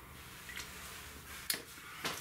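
Two small clicks over faint background hiss: a faint one about half a second in and a sharper one about a second and a half in.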